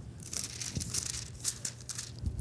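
Paper rustling in short, irregular crackles as Bible pages are handled and turned, close to the microphone, over a steady low electrical hum.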